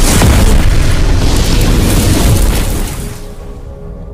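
Cinematic boom sound effect for an animated logo intro: a sudden loud hit with a deep rumble that holds for about three seconds, then eases into a soft held synth chord near the end.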